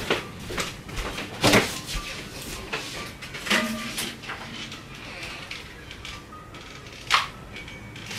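Refrigerator door being opened and things handled inside it: a few scattered knocks and clicks, the loudest about a second and a half in and another near the end, with low room noise between.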